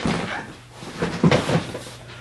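Two short bursts of knocking and rustling, as of something being handled and set down, one at the start and one about a second in.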